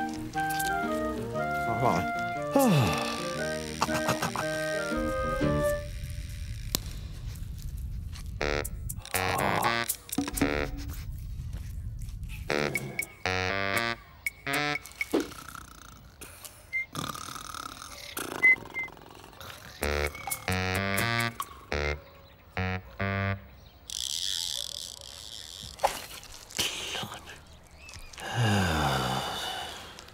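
Cartoon soundtrack: light background music for the first few seconds, then a low rumble, then a string of short comic sound effects and wordless vocal noises, ending with a falling, drawn-out vocal sound.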